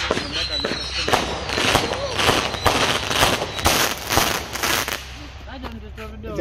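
Fireworks going off in a rapid run of crackles and pops, densest about three to five seconds in and thinning near the end. A thin whistle sounds through the first second or so.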